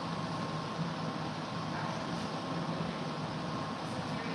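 Steady room noise: an even hiss over a constant low hum, with no distinct events.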